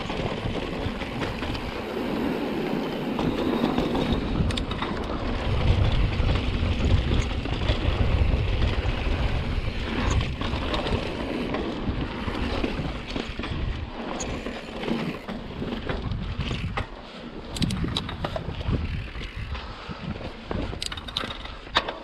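Mountain bike rolling down a rocky sandstone trail: tyre noise on rock with wind buffeting the camera microphone, heaviest for a few seconds in the first half. Sharp clicks and knocks from the bike riding over rock ledges in the second half.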